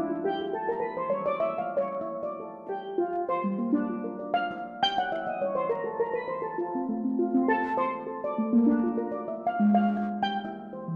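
Pair of steel pans played with mallets in a jazz tune: quick runs of struck, ringing pitched notes and chords, with lower notes held under the melody.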